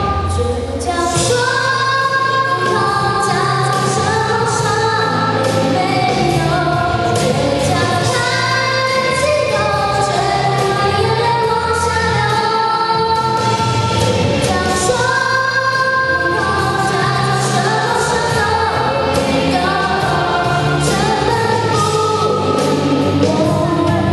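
A girl singing into a handheld microphone over a karaoke backing track, the music and her voice continuing steadily.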